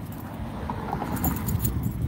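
Low rumbling handling noise and faint rustling on a hand-held phone microphone carried outdoors.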